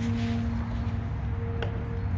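A steady low background hum, with one light metallic click about one and a half seconds in as a wrench is set on the brass draw-straw fitting of a plastic fuel tank.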